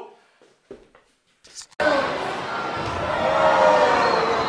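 A quiet moment with a couple of brief soft knocks, then, about two seconds in, the loud noise of a crowd in an indoor wrestling arena cuts in suddenly, many voices shouting and calling in a large echoing hall.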